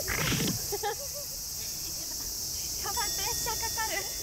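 A steady, high-pitched chorus of insects in the surrounding trees, with a short loud vocal exclamation right at the start and a few brief spoken voices near the end.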